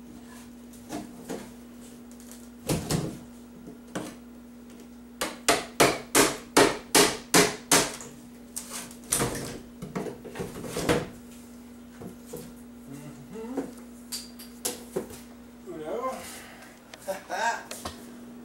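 Hammer knocking on a wooden shipping crate to free its lid: scattered knocks, then a quick run of about nine hard blows a few seconds in, then more scattered knocks.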